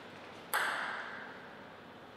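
A table tennis ball bounced once on the table, a single sharp tap about half a second in with a ringing tail that fades over about a second.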